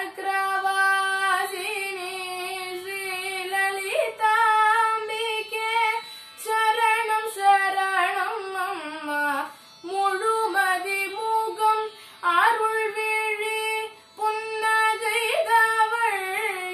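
A young girl singing Carnatic music solo, a pada varnam in Adi tala: long held notes with sliding, oscillating ornaments, in phrases broken by short breaths.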